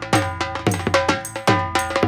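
Dhol drum beaten with a curved stick and a thin stick, a fast, driving rhythm of sharp strokes at about four a second.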